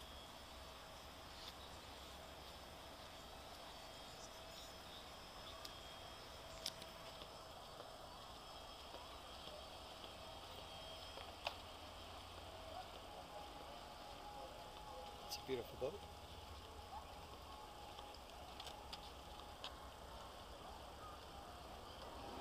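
Quiet harbour background: a low steady hum with a few faint clicks and distant voices.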